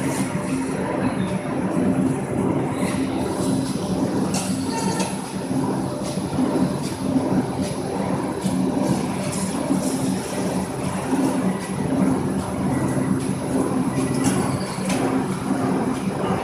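Corrugated board line stacker and its belt conveyor running: a steady mechanical rumble with a low hum, and scattered short clicks and knocks.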